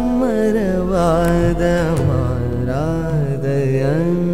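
Tamil devotional song to Lord Ayyappa: a singer's voice glides through ornamented, held melodic phrases over a steady low sustained backing.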